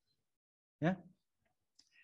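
A single short spoken "yeah" about a second in, with near silence around it.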